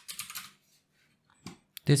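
Typing on a computer keyboard: a quick run of keystrokes in the first half second, then a couple of separate clicks about a second and a half in.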